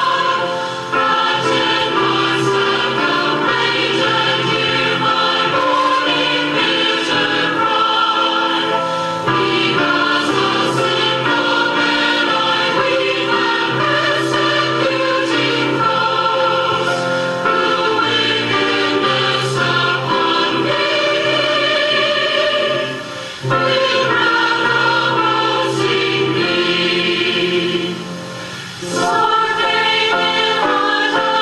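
A choir singing a slow hymn of earnest prayer in held, chord-like phrases, with brief breaks between phrases about 23 and 29 seconds in.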